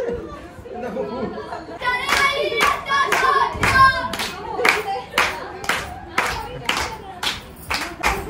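A group of people clapping in unison, about two claps a second, keeping time for giddha dancing; the clapping starts about two seconds in. Voices call and sing over the first part of it.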